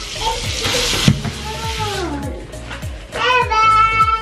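Handheld bathtub shower spraying water over a small wet Maltese dog, the hiss stopping about two seconds in. Background music with a steady beat runs underneath, and a toddler squeals high near the end.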